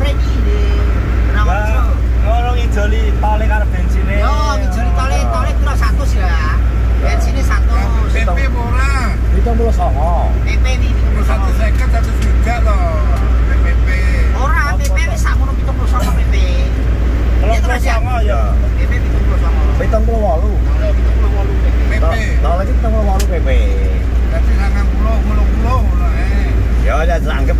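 Steady low drone of an Isuzu Panther's engine and tyres heard from inside the cabin while driving, with men's voices talking over it throughout.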